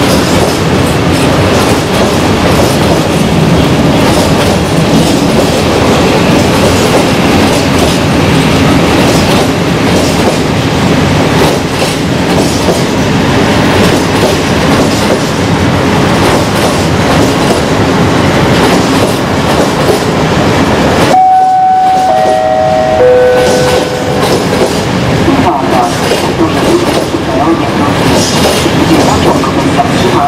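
A freight train of open coal wagons rolls slowly through the station, with steady wheel clatter and rumble. About two-thirds of the way in, a three-note chime steps down in pitch, the kind that opens a station announcement.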